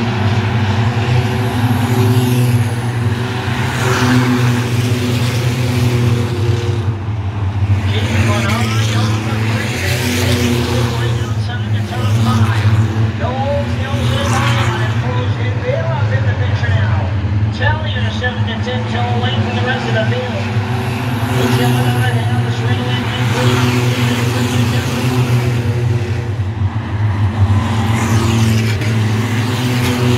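A pack of short-track stock cars racing around an oval, their engines droning steadily together and swelling several times as cars pass close by.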